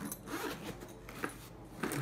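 Zipper on a Powerfix fabric tool bag being pulled open along the top of the bag, a scratchy rasp that is strongest at the first pull.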